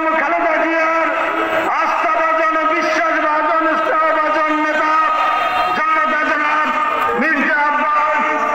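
A man's voice speaking continuously through a public-address loudspeaker, with long held, drawn-out tones.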